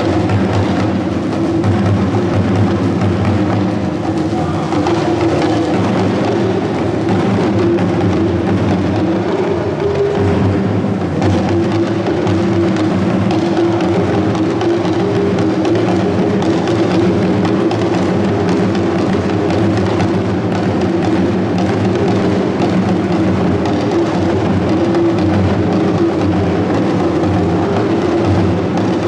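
Ghanaian hourglass talking drums and a strap-hung barrel drum, beaten with curved sticks, playing a continuous dance rhythm without a break.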